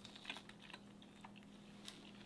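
Near silence broken by a few faint, scattered small clicks of eating: chewing and chopsticks on food.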